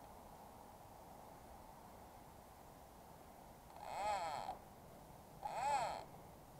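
Faint, steady rushing of a fast-flowing river. A man's voice breaks in twice near the end, with a short sound and then a cough.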